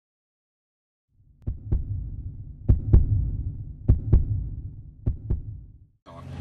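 Heartbeat sound effect: four slow double thumps, lub-dub, about 1.2 s apart over a low rumble, starting about a second in and stopping just before the end.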